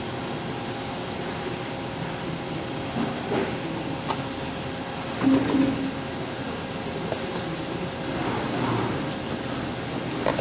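Eagle CP60H pyramid-style section-bending machine running with a steady mechanical hum as its rolls draw a steel strip through to bend it. A few short knocks sound over the hum, and the loudest comes about five seconds in.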